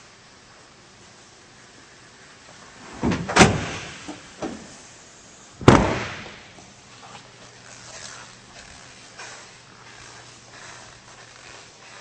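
Pickup's hard tonneau bed cover being handled and slammed shut. Two sharp knocks come about three seconds in and a softer one a second later, then a loud slam with a short ringing decay just before the middle. Faint handling noise and a low hum follow.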